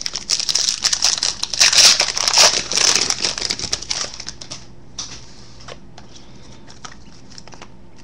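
A foil trading-card pack wrapper being torn open and crinkled by hand for about the first four seconds. It then thins to a few light ticks as the cards are handled.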